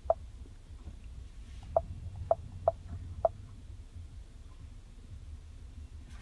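Short beeps from a 2015 Ford Explorer's touch-sensitive climate control panel as its buttons are pressed: one at the start, then four more about half a second apart beginning a couple of seconds in. A low steady rumble runs underneath.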